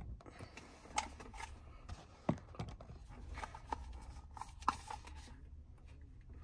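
Faint, scattered clicks and light handling noises of small objects being moved about by hand, over a low steady hum.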